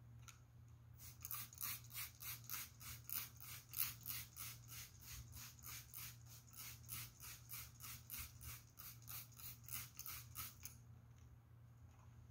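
Hand trigger spray bottle misting water onto cloth laid on an ironing board, dampening it for ironing: a quick run of short hissing sprays, about three a second, stopping near the end.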